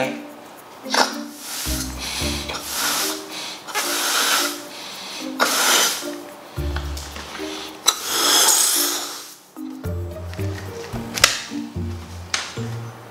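Background music with a repeating low melody, over a series of breathy puffs from a rubber balloon being blown up by mouth: about six breaths, the longest about two-thirds of the way in.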